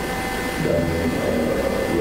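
A man's voice saying a single hesitant word, over a steady background hiss and hum.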